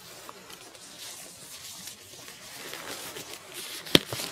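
Faint rustling as latex exam gloves are handled, with one sharp click just before the end.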